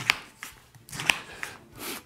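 Chef's knife slicing through a peeled pineapple into rounds: two sharp knocks about a second apart as the blade comes through each slice, with fainter cutting sounds between.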